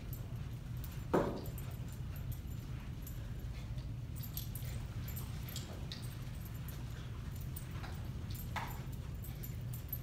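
A small dog gives a short whine about a second in, then a fainter one near the end, over a steady low hum.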